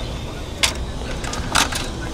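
A few light clicks of small metal parts and hand tools being handled, over a steady low rumble.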